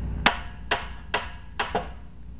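A series of five sharp knocks, about two a second, over a low background hum.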